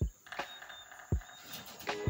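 A few dull, low thumps, four in two seconds at uneven spacing, from a phone being carried and jostled as the person filming walks along the row, over faint steady background tones.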